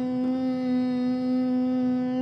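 A young boy's long closed-mouth "mmm", held on one steady pitch: a thinking hum before he answers a question.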